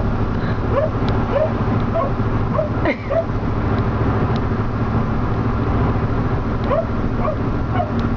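An excited dog whining and yipping in short, rising cries, about one a second, with fewer in the middle, through the truck's rear cab window over the steady drone of the engine and road noise.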